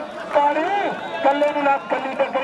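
A man's voice calling out continuous commentary, the pitch rising and falling in long arcs.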